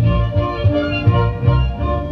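Czech folk band playing a lively dance tune, with fiddles carrying the melody, clarinet, and a double bass pulsing out a steady beat underneath.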